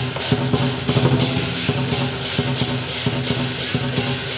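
Southern lion dance percussion: a large lion drum with cymbals and gong keeping a steady, driving beat, with about three cymbal clashes a second.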